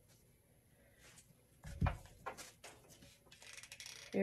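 Hands handling craft materials and a hot glue gun on a tabletop. A knock comes a little before the middle, then a few lighter clicks and knocks and a short rustle near the end.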